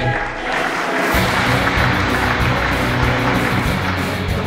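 Audience applauding, over background music with steady low notes that come in about a second in.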